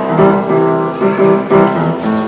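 Upright piano being played, a run of chords struck one after another.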